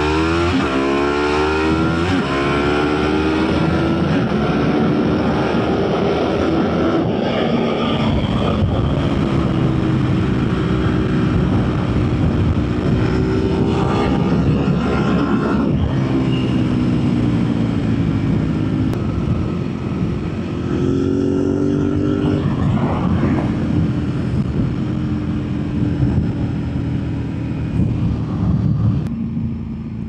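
Ducati 1098S L-twin engine pulling hard at speed. Its pitch climbs steeply in the first second, then rises and falls with the throttle, and the engine note drops near the end.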